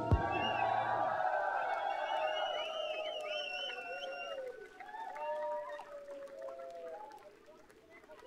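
Concert crowd cheering and whooping at the end of a metal song, with many wavering held shouts. It is loudest at first and dies away toward the end.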